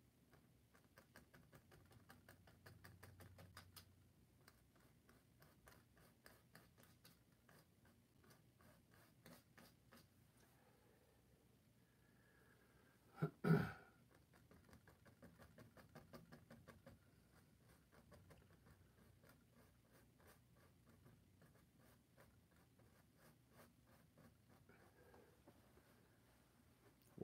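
Faint, scratchy dabbing and stroking of a paintbrush on a stretched canvas, a quick run of soft ticks, with one brief louder knock about halfway through.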